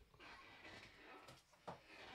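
Near silence: faint room tone, with one faint short knock near the end.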